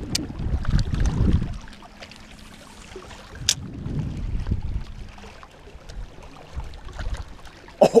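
Small waves lapping against a rocky shore, in uneven swells, with low rumbling on the microphone and a sharp click about three and a half seconds in.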